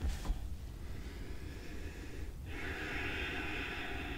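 A woman's slow, audible breathing at rest: a long soft breath, a short pause a little over two seconds in, then another long breath.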